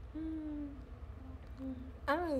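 A woman's closed-mouth hum, a steady 'mm' held for about half a second, followed by two shorter, softer hums later on.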